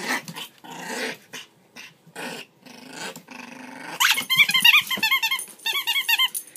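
A puppy growling in play, in short rough bursts, then a quick run of short high squeaks for the last two seconds or so.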